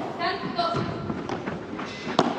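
Padel rally: a padel ball struck by rackets and bouncing on the court, a few short, sharp knocks, under faint voices.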